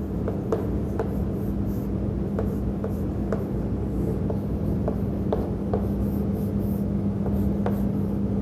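Chalk on a chalkboard: irregular sharp taps and short strokes as bond-line structures are drawn, over a steady low hum.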